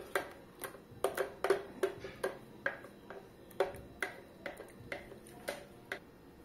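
Silicone spatula scraping and knocking inside a tilted blender jar as thick mousse is scraped out, a series of light, irregular clicks, two or three a second.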